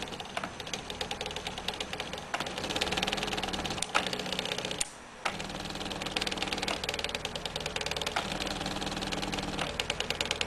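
Home-built pen plotter made from salvaged printer carriage assemblies drawing letters. Its carriage motors run in short bursts of steady pitch with a rapid fine ticking, sharp clicks come from the push solenoid lifting and dropping the pen, and there is a brief lull about five seconds in.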